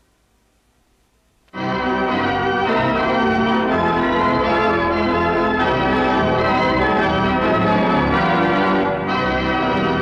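Wurlitzer theatre pipe organ coming in suddenly after a second and a half of near silence, then playing loud, full sustained chords, with a brief dip near the end.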